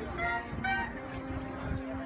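Marching band playing: a few short brass notes, then a steady low note held from about a second in.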